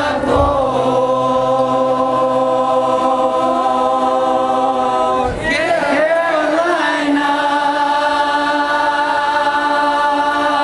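A male voice singing long held notes into a close microphone, over a steady low sustained tone. About halfway through the voice slides up and down before settling on another long held note.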